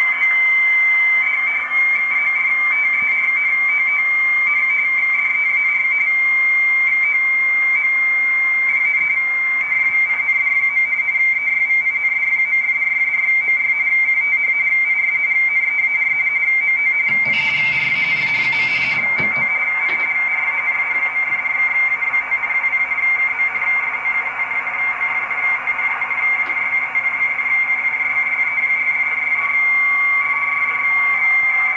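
Amateur shortwave radio receiving a radioteletype (RTTY) data signal: a steady high whistle near 2 kHz, finely keyed, over band hiss. About 17 seconds in, a burst of noise lasts about two seconds.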